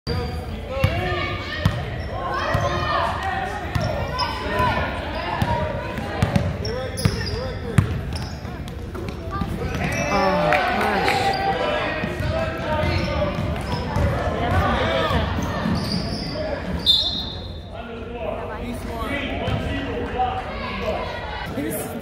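Basketball dribbled on a hardwood gym floor, with thuds echoing in a large gym, over the chatter of spectators.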